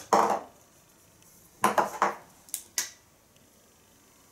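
Dry-erase markers clattering against the whiteboard's tray as one is picked up: a short run of hard plastic knocks about halfway through, then two sharp clicks.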